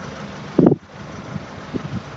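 Citroen C3 Picasso's 1.6 diesel engine idling steadily, with a short thump about half a second in.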